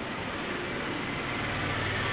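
A steady rushing background noise that slowly grows louder, with a low hum coming in near the end.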